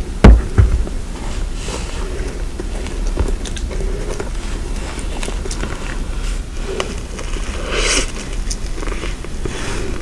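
A single loud knock about a quarter second in as the aerosol whipped-cream can is set down on the wooden board, then soft handling of a flaky croissant close to the microphone: faint scattered crackles and a brief rustle near the end.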